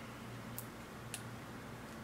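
Two faint, small clicks about half a second apart as a small plastic cosmetic sample tube is opened, over a low steady hum.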